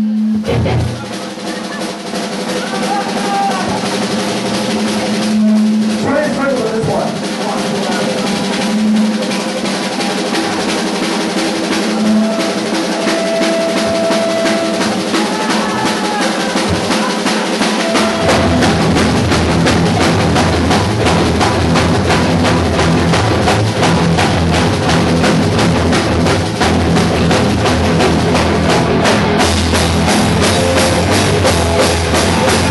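Live rock band: a drum kit played fast and hard with sustained electric guitar tones over it, then the bass and full band come in heavily about eighteen seconds in.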